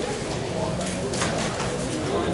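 Indistinct talking, with no clear words.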